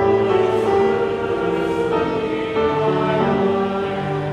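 A hymn sung by a group of voices in harmony, moving through held notes from line to line, with a new phrase starting at once.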